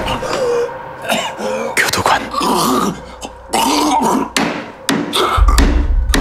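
A man coughing and groaning in pain, a string of short, strained vocal sounds with gasps between them. A deep low rumble comes in near the end.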